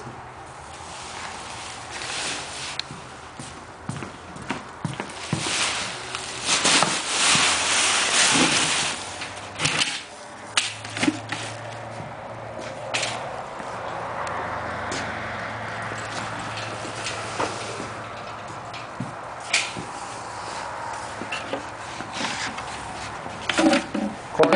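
Rustling of woven plastic feed sacks and knocks of plastic buckets being handled, with footsteps on a hard floor, while sheep feed is measured out. The rustling is loudest a few seconds in. A low steady hum runs through the middle stretch.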